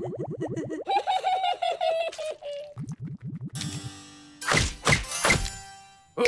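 Cartoon music and sound effects: a rapid, pulsing pitched figure, then three sharp flyswatter whacks in quick succession in the second half.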